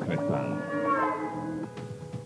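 Dramatic commercial music with a big cat's drawn-out snarl sound effect, its pitch rising and then holding for about a second and a half.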